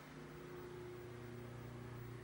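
Faint steady hum of a few low, held tones, the background drone of a small motor or appliance.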